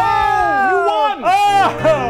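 A person whooping and cheering in triumph: one long, high-pitched yell that slowly falls in pitch, then two short, rising-and-falling whoops in the second half.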